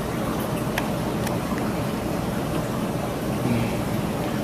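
Steady noise of running reef-aquarium equipment, pumps and water moving through the filtration, with a low hum and a couple of faint clicks.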